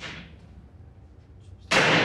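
A door slammed shut: one loud, sudden bang near the end, with a short echo as it dies away.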